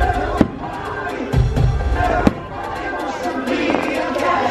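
A fireworks show heard from the crowd: show music plays over loudspeakers while firework shells go off, with sharp bangs about half a second in and again a little after two seconds, and lower booms between them.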